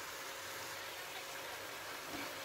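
Salmon pieces sizzling softly in oil in a cooking pot with onion and ginger, a steady faint sizzle, the fish being sautéed before any water is added.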